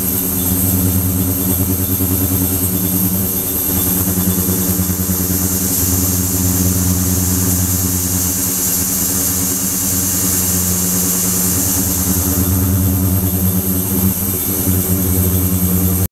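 Ultrasonic cleaning tank running: a steady buzzing hum with overtones, over a hiss from the agitated water that grows stronger in the middle.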